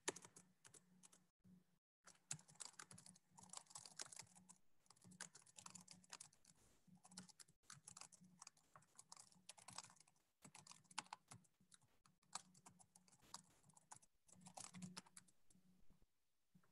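Faint computer keyboard typing: quick, irregular runs of keystrokes with short pauses between them, picked up by a participant's microphone on a video call.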